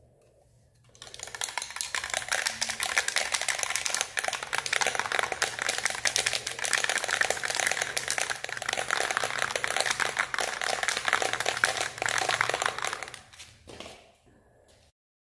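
Aerosol spray paint can being shaken hard, its mixing ball rattling in a fast, dense clatter. It starts about a second in and stops shortly before the end.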